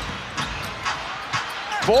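Basketball dribbled on a hardwood court, bouncing about twice a second over steady arena crowd noise.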